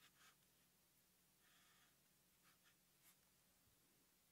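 Near silence, with the faint scratch of a felt-tip Sharpie marker drawing lines on paper: one longer stroke about halfway through, then a few short strokes.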